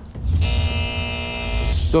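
Short television music sting: a held chord of many steady tones over a deep bass, lasting about a second and a half.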